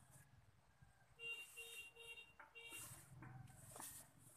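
Four short electronic beeps in quick succession, faint, over low hiss and rustling.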